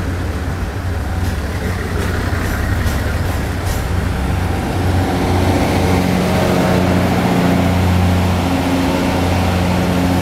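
A TRA DR3000 diesel multiple unit rolling past slowly as it pulls into the station, its diesel engines running with a steady low hum. The engine sound grows louder and steadier about halfway through, with a few faint clicks in the first seconds.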